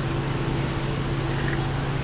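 Steady low machine hum: a deep, even drone with a fainter, higher steady tone above it.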